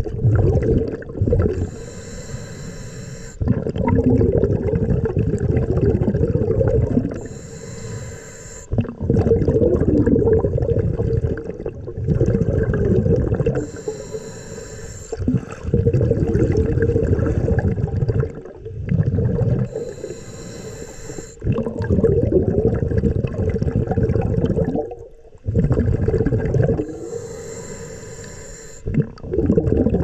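A scuba diver breathing through a regulator underwater: five breaths, each a short hissing inhale followed by a longer rumbling burst of exhaled bubbles, about every six seconds.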